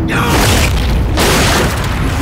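Film fight sound effects: a heavy boom and crash at the start with a falling whoosh, then a second crash a little over a second in, over orchestral score music with low drums.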